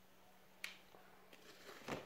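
Quiet handling sounds: a sharp click about half a second in, then a short rustle and a louder clack near the end, as a hot glue gun and crocheted yarn pieces are moved by hand.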